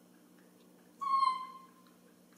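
A baby monkey gives one short, high, whistle-like cry about a second in, falling slightly in pitch as it fades: the cry it makes when hungry for milk.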